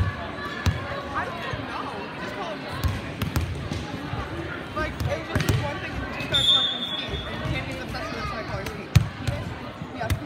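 A volleyball bouncing on a hardwood gym floor several times amid the chatter of players and spectators, with one short whistle blast a little past the middle.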